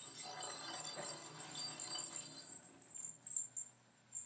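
Small plastic cat-toy balls rolling and clattering against each other in a bathtub as a cat bats them about, a bell inside one ball jingling steadily. The rattling dies down near the end.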